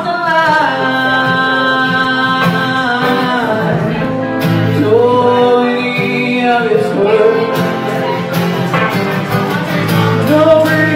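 Live rock duo: strummed acoustic guitar and electric guitar playing together, with a man singing in long held, bending notes over them.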